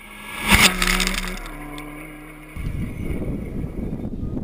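Rally car passing a ground-level microphone at speed on a gravel stage: the engine note swells to a loud peak about half a second in, then drops in pitch as the car goes away. Just past halfway the sound cuts abruptly to a steadier noisy rumble with a more distant engine.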